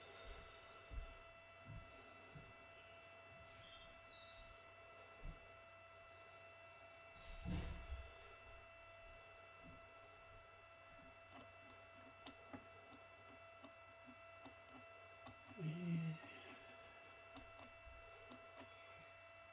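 Near silence: room tone with a faint steady whine, scattered faint clicks and a soft thump about halfway through.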